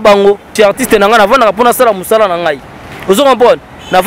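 Speech only: a man talking, with a few short pauses.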